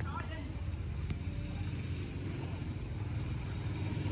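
Quiet, steady low background rumble of outdoor ambience, like distant road traffic, with no distinct events.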